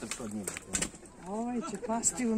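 Voices calling out across a football pitch during play. One drawn-out call rises and falls in the second half, and there are a couple of sharp knocks in the first second.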